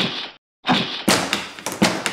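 Hollow thunks and knocks of a plastic toy playhouse door, with a couple of sharper knocks in the second half.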